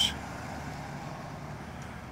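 A steady low background hum, even and unchanging, with no distinct events.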